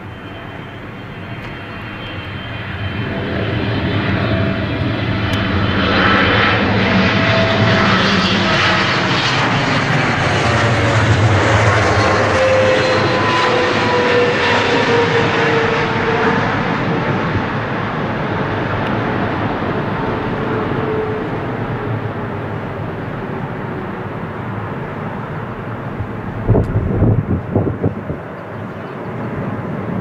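Air Canada Boeing 777 jet on final approach passing close by. The engine noise builds, stays loud for several seconds with a whine that falls in pitch as the plane goes past, then eases as it lands. A few brief low rumbling surges come near the end.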